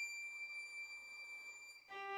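Solo violin holding one soft, high sustained note that slowly fades, with a new, lower note starting just before the end.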